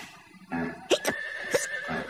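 Cartoon horse hiccupping, two short, sharp horse-like yelps about half a second apart, over light background music.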